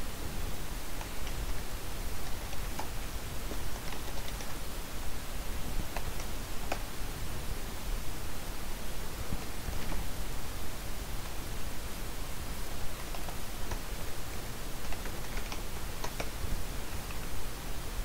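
Scattered, irregular keystrokes on a computer keyboard over a steady hiss.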